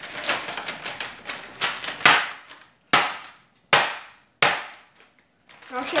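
Metal meat mallet hammering a paper-covered sheet of hardened homemade hard candy on a countertop to break it into pieces: a quick run of blows in the first two seconds, then three separate sharp strikes about three-quarters of a second apart.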